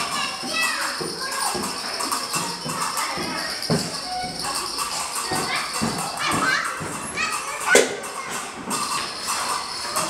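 Busy indoor hall ambience: voices in the background and background music, with scattered light clicks and knocks and one sharp knock about eight seconds in.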